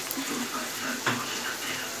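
Onion paste and ground spices frying in oil in a kadai, with a steady sizzle. A single light knock about a second in.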